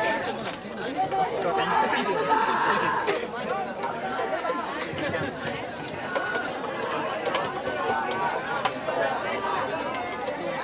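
Many young men's voices shouting and chattering over one another, footballers and sideline players calling out across the pitch.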